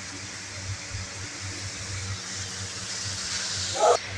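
Steady low background hum under an even hiss, with no distinct event; the hiss swells slightly toward the end.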